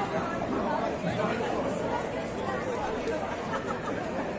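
Crowd chatter: many people talking at once, with no single voice standing out.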